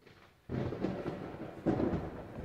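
Rumbling thunderstorm sound effect from an animated tornado-warning weather demo, played over the hall speakers. It starts suddenly about half a second in and swells briefly near the end.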